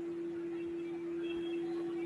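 A steady hum at one unchanging pitch over faint background hiss.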